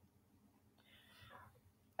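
Near silence, with a faint short hiss about a second in.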